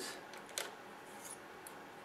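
A few faint, light clicks, the clearest about half a second in, as a small metal coupler plate fitted with a pintle hitch is handled against a plastic scale-model truck chassis.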